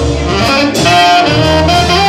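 Saxophone playing a jazz solo, a line of held notes stepping up and down, over accompaniment with low bass notes.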